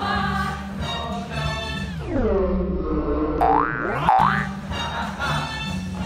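Show-choir singing with accompaniment that, about two seconds in, slides down in pitch like a record slowing to a stop. Two quick rising whistle-like glides follow, in the manner of a cartoon 'boing' sound effect, and then the music resumes.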